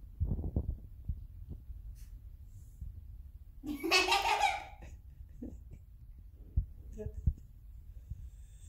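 A person's voice breaks in about four seconds in, a short outburst of about a second and the loudest sound, over a low rumble with a few soft thumps.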